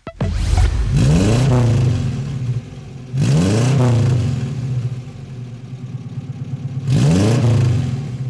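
The 1800 cc four-cylinder engine of a 1977 Dodge 1500 GT100 with twin carburettors, heard at the tailpipe. It idles and is blipped three times, about a second in, around three seconds in and near the end. Each time the revs rise quickly and fall back to idle.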